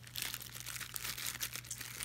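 Plastic bag crinkling and rustling in quick irregular crackles as pacifiers are put back into it.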